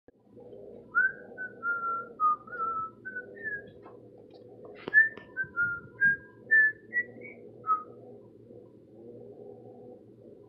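A person whistling a short tune in two phrases of quick, clear notes, with a pause of about a second between the phrases.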